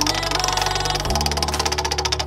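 Spinning prize-wheel sound effect: fast, even ticking, many ticks a second, as the wheel turns, over background music with steady bass notes.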